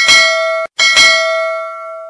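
Notification-bell sound effect ringing twice: the first ding is cut short after about half a second, and the second rings on and fades away.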